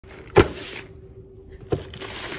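A sharp thump about half a second in, then the crinkle of a plastic poly mailer. A second, smaller knock near the end, with more crinkling as the package is handled on the wooden table.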